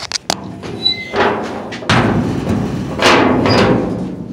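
Handling noise from a hand-held camera: a few sharp clicks, then rubbing and scraping swells as fingers move over the microphone and the camera is moved around.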